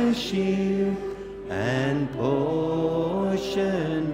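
Congregation singing a slow hymn together, long held notes with short breaks between phrases.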